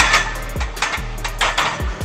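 A loaded barbell is racked in a squat rack: a loud clank of the steel bar and iron plates at the start, then more rattling about a second later. Background music with a steady beat runs underneath.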